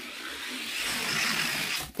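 Two die-cast toy cars rolling side by side down a gravity drag-race track: a steady rushing whirr that builds a little and stops abruptly near the end as the cars reach the finish.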